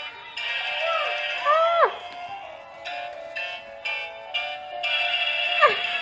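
Musical Halloween greeting card playing a tinny electronic tune through its small speaker, in short stop-start phrases with a few sliding tones.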